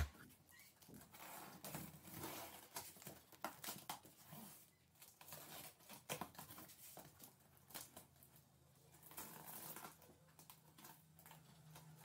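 Faint, intermittent scraping and crinkling of a blade slicing through packing tape along the seams of a cardboard carton, with small clicks and rustles of the cardboard.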